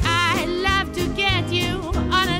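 A woman singing a swing jazz vocal with vibrato, accompanied by a small jazz band with upright bass.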